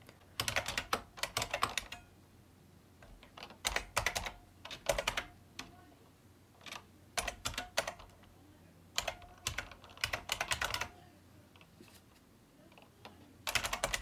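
Keystrokes on a computer keyboard as a Windows product key is typed in, in five short runs of rapid clicks with pauses between them.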